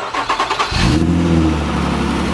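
A Nissan Murano's V6 cranked by the starter for under a second, then catching and settling into a steady fast idle: the car starts on a newly fitted battery after the old one had died.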